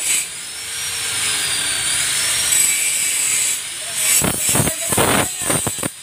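Workshop power tool: a high whine that drifts up and down in pitch, then a run of rough scraping strokes in the last two seconds.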